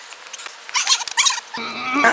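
A man's excited, wordless cries: a wavering shout about two-thirds of a second in, then a held, drawn-out vocal note near the end.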